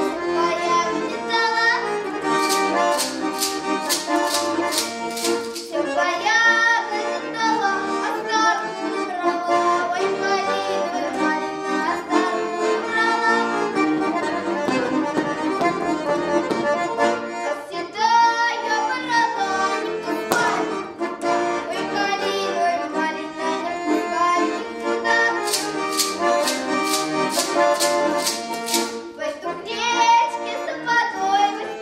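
Button accordion playing a Russian folk dance tune, with a wooden plate clapper (treshchotka) rattled in two runs of sharp, evenly spaced clacks: a few seconds in and again near the end.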